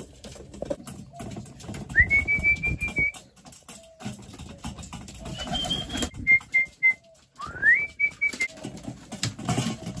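Pigeons feeding from a metal bowl, with pecking and fluttering, and four short high whistles, two of them sliding up and then held, one broken into four quick notes.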